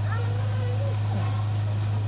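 A loud, steady low hum, with faint voices talking in the background.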